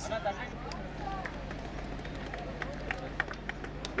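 Outdoor football-pitch ambience: faint, distant voices of players, a steady low hum, and scattered light taps and clicks through the second half.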